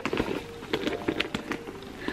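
Handling noise from a Loungefly mini backpack worked in the hands: scattered light clicks and rustles from its zipper, metal hardware and straps.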